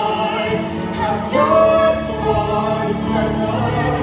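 Live stage duet: voices singing long held notes of a ballad, with a new sung phrase starting a little over a second in.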